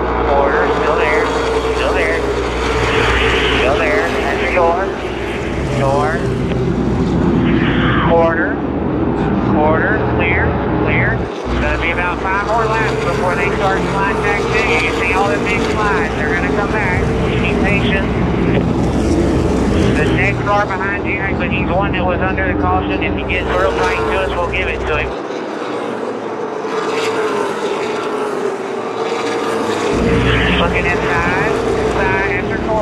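Outlaw Late Model race cars' V8 engines running hard around an asphalt oval, a steady drone with pitch that rises and falls again and again as cars pass.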